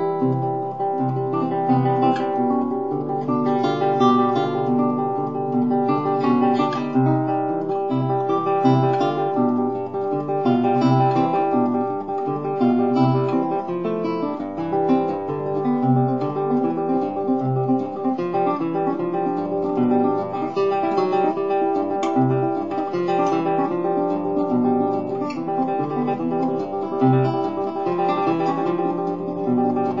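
Romantic guitar played solo: a flowing run of plucked notes over a repeated bass note, in a classical-era allegretto.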